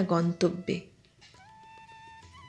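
A woman reciting Bengali poetry finishes a line with a drawn-out final word, then falls silent. Soft background music comes in about a second later, a few quiet held notes.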